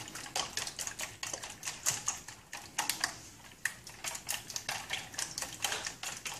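A whisk beating raw eggs in a clear container, clicking rapidly and unevenly against its sides, with a brief lull about halfway through.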